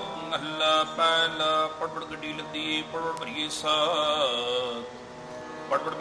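Sikh kirtan: harmonium playing a melody with tabla strokes. A singer's drawn-out, wavering note comes in about three and a half seconds in.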